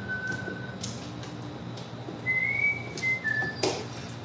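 Someone whistling a few long, pure notes while mahjong tiles click as they are drawn and discarded on the table, the loudest clack coming near the end.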